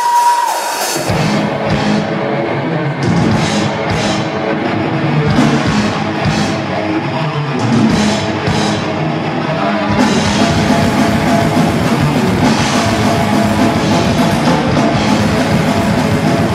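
Heavy metal band playing live: distorted electric guitars, bass and drum kit with cymbal crashes, opening with a short held note. About ten seconds in the playing becomes denser and fuller.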